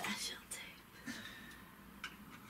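Quiet whispering voice, faint and breathy.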